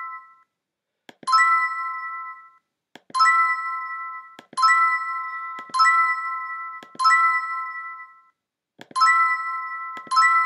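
Electronic reveal chime of an online scratchcard game sounding six times, one bright ding-like chord for each number revealed. Each chime starts with a short click and fades over about a second, with the chimes one to two seconds apart.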